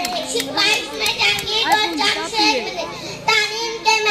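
A girl giving a speech in Urdu into a microphone, speaking continuously with raised, declamatory gestures of voice.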